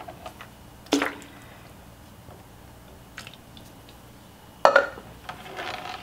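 Milk being poured into a stainless-steel pot of hot champurrado base, a soft, quiet liquid sound, with a sharp knock about a second in and two sharp knocks close together near the end.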